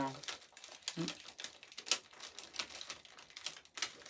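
Clear plastic packaging crinkling and crackling in the hands as it is handled and opened, in a run of small irregular clicks.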